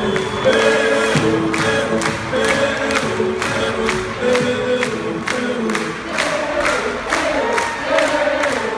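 Rock band playing live in an arena, with a steady drum beat about twice a second and sung melody, the crowd singing along and cheering.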